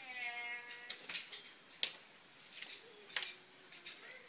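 A young child's high-pitched, drawn-out vocal squeal lasting about a second. It is followed by a few sharp clacks of wooden toy train pieces being handled.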